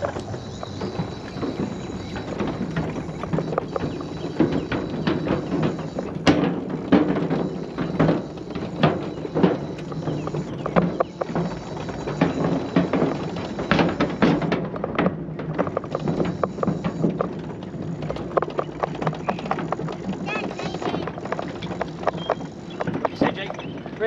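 Electric mobility scooter rolling across a wooden plank footbridge: an uneven, continual run of knocks as the wheels go over the deck boards, over a steady motor hum.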